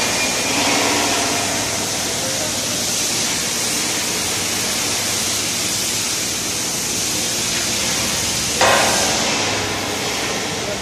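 Steady hiss of workshop noise, with one sharp knock about eight and a half seconds in.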